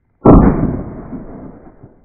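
A single shotgun shot fired at a partridge, going off about a quarter second in, with a long echo that dies away over about a second and a half.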